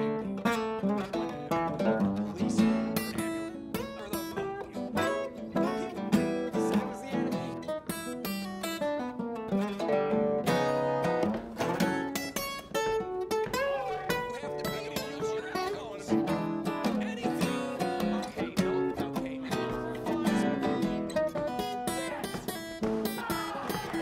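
Acoustic guitar music.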